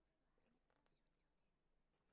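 Near silence: faint room tone with a few faint, short sounds.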